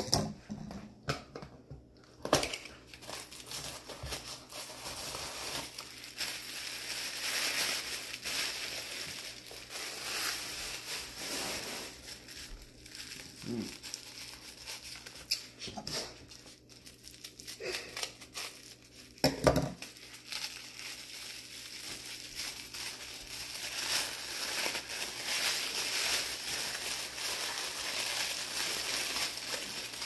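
Packing paper crinkling and rustling as a wrapped crystal is unpacked by hand, with a few sharp clicks and knocks, the loudest about 2 s in and again about 19 s in.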